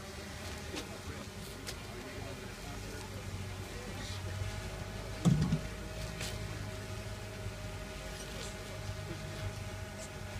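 A steady low mechanical hum with a few light clicks. About five seconds in comes a brief low thump as the roof-coating spreader cart is tipped forward onto its roller.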